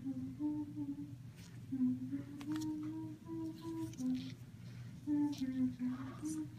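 A woman humming a tune with her mouth closed, holding long notes that step up and down in pitch.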